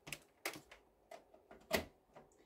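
Several sharp, light plastic clicks and taps, about five over two seconds, as the painted nail swatch sticks and the nail-curing lamp are handled.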